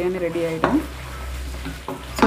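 Mixed vegetables frying in oil in a pressure cooker, stirred with a wooden spatula.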